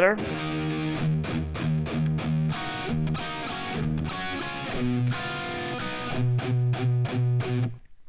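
Distorted electric guitar, tuned down a half step, playing a hard-rock rhythm riff: repeated low chugging notes about four a second between ringing barre-chord stabs. It stops just before the end.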